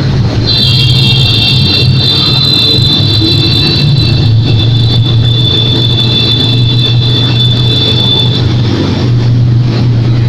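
Motorcycle engine running steadily while riding inside a road tunnel, with a high steady whine laid over it from about half a second in until nearly two seconds before the end.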